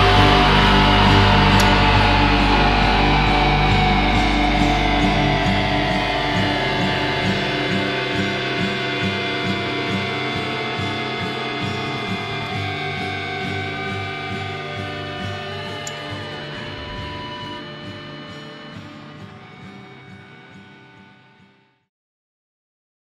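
Background rock music ending on one long distorted electric guitar chord that rings out and slowly fades away, dying out just before the end.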